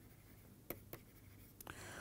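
Faint taps and scrapes of a stylus on a pen tablet during handwriting, with two small clicks a little under a second in, all very quiet. A soft rush of noise rises near the end.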